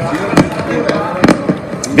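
A few scattered sharp clicks or pops, two of them close together in the middle, over faint background voices.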